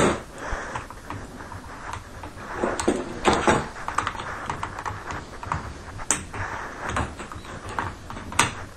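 Clicks and knocks of metal and plastic parts being handled as a camera head is fitted into a quick-release mount on the end of a metal camera-crane bar. There is a cluster of clicks about three seconds in and a sharper knock about six seconds in.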